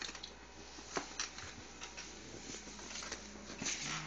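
A Chihuahua rummaging among paper and plastic: faint rustling and scraping with scattered light clicks and taps, two sharper ones about a second in.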